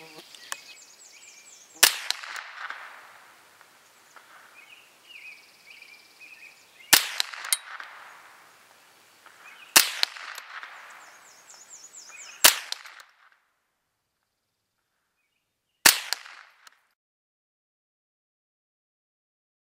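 Semi-automatic CZ 511 .22 Long Rifle firing single barrel-warming shots: five sharp cracks a few seconds apart, each with a brief fading echo. The last shot comes after a gap of silence.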